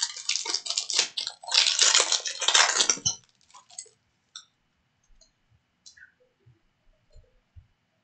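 Foil wrapper of a 2022 Select UFC trading-card pack being torn open and crinkled, a dense crackle for about the first three seconds. After that come only a few faint ticks as the cards are handled.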